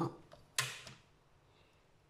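A single clack of a plastic ruler set down on card over a cutting mat about half a second in, dying away quickly.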